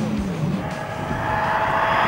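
Rally car engine approaching on a special stage, growing steadily louder, with a held engine note.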